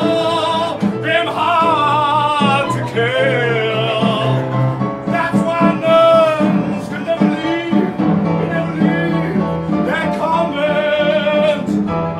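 A song from a comedy stage musical: a voice singing with vibrato over a steady instrumental accompaniment.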